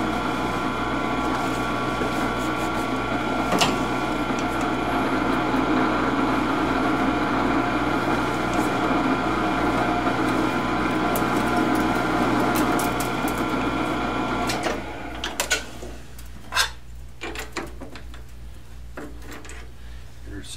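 Metal lathe running with the spindle in low range at about 115 rpm: a steady hum of motor and gearing with one sharp tick a few seconds in. The lathe cuts off about three-quarters of the way through, and light metal clicks and knocks of tooling being handled follow.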